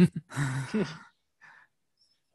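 A person's brief, breathy laugh, fading out about a second in.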